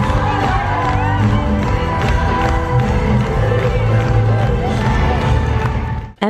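Live pop music in an arena: band with a steady bass beat and singers, with the crowd cheering, heard from the seats.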